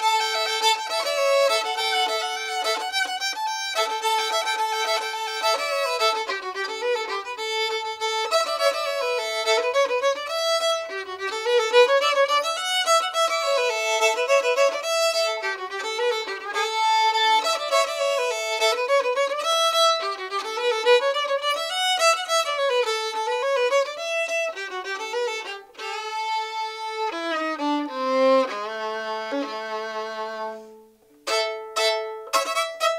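Solo fiddle tune bowed on a c. 1900 Stainer violin strung with Prim strings: a quick melody played against a steady held drone string, stepping down to a low held note near the end.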